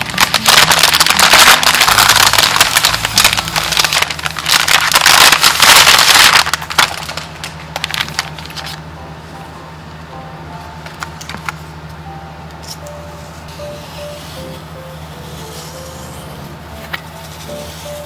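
Crumpled kraft packing paper rustling and crinkling loudly as it is handled and pulled out of a box, stopping about seven seconds in. After that, soft background music with a few faint clicks.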